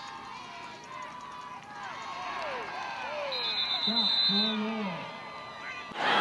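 Field sound from a youth football game: several voices shouting and calling out at once, players, coaches and spectators, growing louder toward the middle. A steady high tone sounds for about a second a little past the middle.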